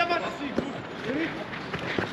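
Footballers calling out across an outdoor training pitch, with one short thud of a ball being kicked about half a second in.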